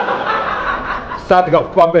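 Chuckling laughter during the first second, then a man's voice from about one and a half seconds in.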